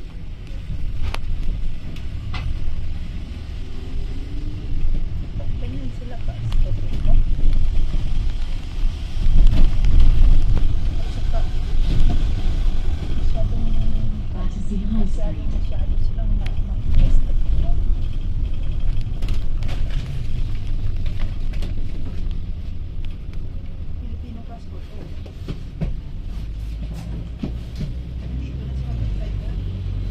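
Low rumble of a London double-decker bus's engine and running gear heard from inside the upper deck while the bus is under way, swelling loudest about ten seconds in, with scattered clicks and rattles from the body.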